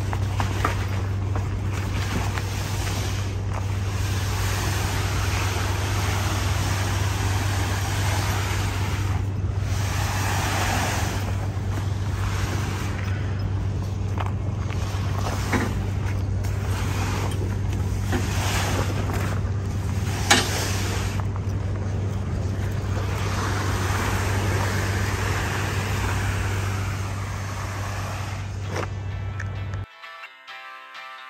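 Heavy vinyl tarp being dragged off a trailer load and across gravel and pavement, rustling and scraping in uneven waves, over the steady hum of an idling diesel truck engine. One sharp knock about twenty seconds in.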